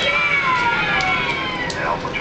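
A drawn-out, high-pitched cry that slides down in pitch over about a second and a half, from a voice in the room rather than from the phone being handled.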